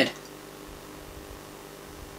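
Steady low electrical hum with several overtones from the running valve Tesla coil rig and its mains power supply.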